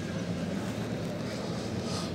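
Steady background noise of a large indoor hall: a constant low hum and hiss with no distinct events.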